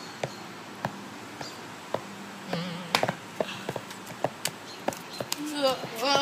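Light, irregular sharp clicks and slaps, about one or two a second, from footsteps in sandals on a stone-paved patio. A voice starts near the end.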